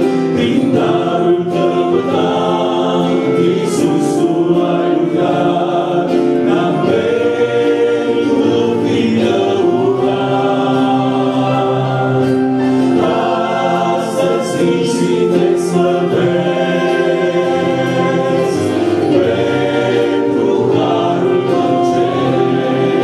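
A choir singing a Romanian Christian hymn in long, held chords.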